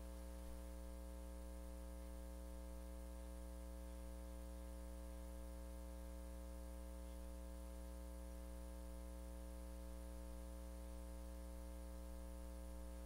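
Steady electrical mains hum with a ladder of higher buzzing overtones over a faint hiss, unchanging throughout; no speech.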